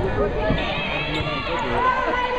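Voices calling out in a large gym during a volleyball rally, with the knock of the ball being played.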